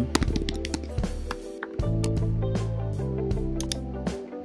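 Background music with sustained low notes that shift about two seconds in, over a few keyboard key clicks in the first second.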